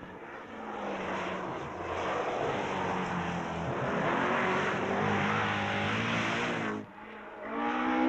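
Rally car engine running hard on a special stage, growing louder over several seconds, then cut off suddenly about seven seconds in. A second engine sound starts to rise near the end.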